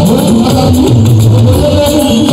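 A man singing into a microphone over loud amplified live band music, with deep bass notes and shaker-like percussion.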